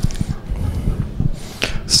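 Lecture-hall room noise with irregular low thumps and rustling, then two short hisses near the end.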